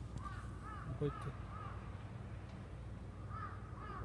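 A crow cawing in two short series: four calls in quick succession at the start, then two or three more near the end. A brief low sound comes about a second in.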